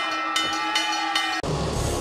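Ring bell clanging, struck three times about 0.4 s apart, marking the end of the fight after a knockdown. About one and a half seconds in, the bell stops and loud music with electric guitar takes over.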